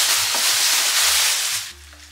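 Plastic packaging rustling and crinkling loudly as a garment is pulled out of its bag. It stops abruptly about a second and a half in.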